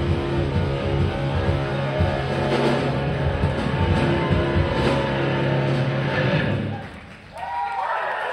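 A live rock band with electric guitar playing until the song ends about seven seconds in. The crowd then starts cheering.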